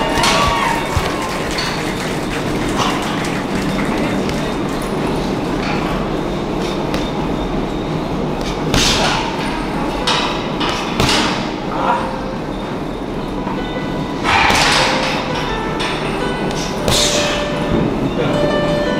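Gloved punches thudding into a hanging heavy bag, with several louder hits in the second half, over a continuous music background.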